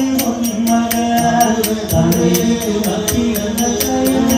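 Nanthuni pattu ritual song: voices chanting a Malayalam devotional melody over steady strikes of small hand cymbals, about four a second.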